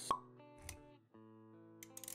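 Intro music for an animated logo: a sharp pop just after the start and a low thud about half a second later, then sustained notes with a few clicks near the end.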